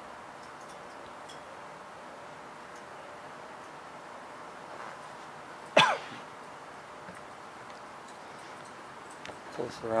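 A single short cough from a person, sudden and loud, about six seconds in, over a faint steady background.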